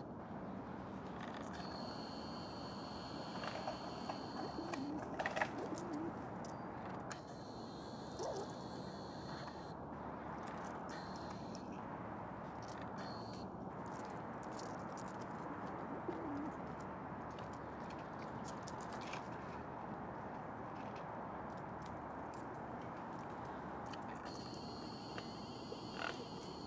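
Quiet woodland ambience with a steady background hiss and a faint high tone that comes and goes, over which a feral pigeon gives a few soft low coos; scattered light clicks throughout.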